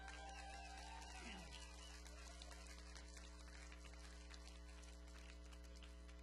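Steady electrical mains hum from the recording setup, with faint scattered clicks and crackle. About a second in, a brief voice glides down in pitch.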